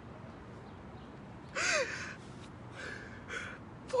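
A woman's sharp emotional gasp about one and a half seconds in, with a short rise and fall in the voice, then two softer shaky breaths: she is overcome and close to tears.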